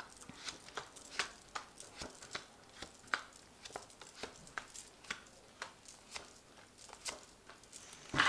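Tarot cards being dealt one after another onto a cloth-covered table: a quick, irregular string of faint card flicks and taps, about three a second.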